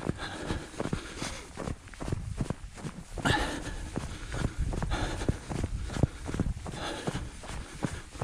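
Running footsteps on a snow-covered trail, a steady stride of about three footfalls a second.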